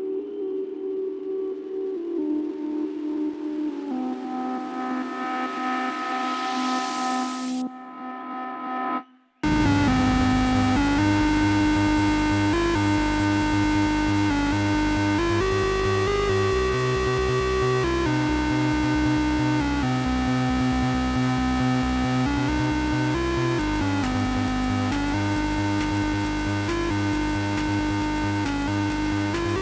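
Electronic dance track played in a DJ set: a melodic synth breakdown with a rising noise sweep, a brief gap of near silence, then the full track drops back in with bass and beat about nine seconds in.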